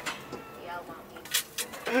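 Quiet talk among several people in a small cabin, with two short hisses about a second and a half in and a laugh starting near the end.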